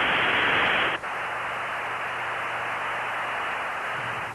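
Static hiss on the Apollo 7 spacecraft-to-ground radio link, with no voice on it. It is loud for about a second, then drops to a quieter, steady hiss with a faint low hum.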